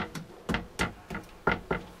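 A handful of light, sharp knocks and clicks, irregularly spaced, from a hand handling a toilet's seat and lid.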